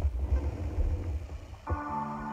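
A low rumble, then closing background music comes in suddenly near the end with several held notes.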